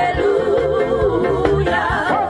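Gospel music: a singer holding notes with a strong vibrato over a band with bass and drums.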